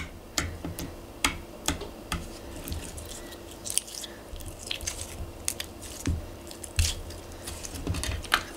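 Soft 100-yen-store (Seria) slime being poked and squeezed by fingers: a run of sharp, irregular wet clicks and pops, with a couple of longer crackling squelches about four seconds in and near seven seconds.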